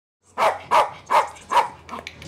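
A dog barking four times in quick succession, about two and a half barks a second, with a fainter fifth bark at the end.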